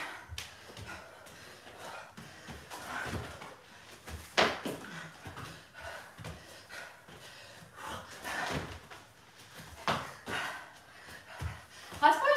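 Irregular dull thumps of feet and knees landing on exercise mats over a wooden floor as two people repeatedly drop to a kneel and jump back up; the sharpest knock comes about four seconds in.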